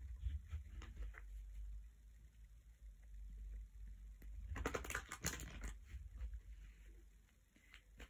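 A deck of Rider-Waite tarot cards being shuffled by hand: faint card rustling and flicks, a few soft ones at first, then a louder cluster of clicky riffling around the middle.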